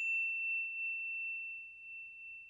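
Ringing tail of a single high bell-like ding from the outro's logo sound effect. It holds one pure tone that slowly fades away.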